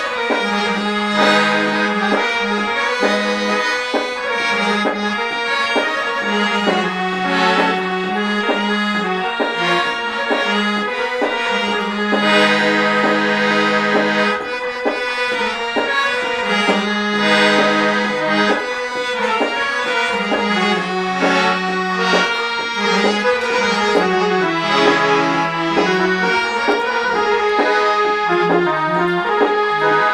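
Harmonium played by hand with its bellows pumped. Its reeds play a melody over lower notes held for a second or two at a time, without a break.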